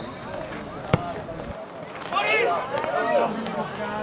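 A single sharp knock about a second in, a football being struck for a free kick, followed by shouting voices around the pitch.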